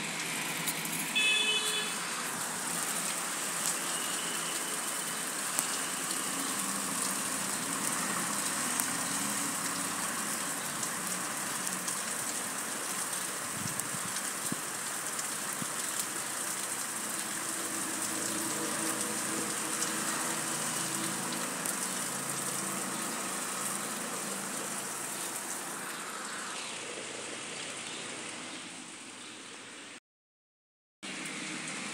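Steady rushing noise of heavy rain and fast-flowing floodwater, with a brief high-pitched tone about a second in.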